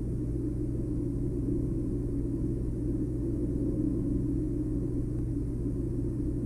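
A steady low drone, deep and even, with no strikes or changes.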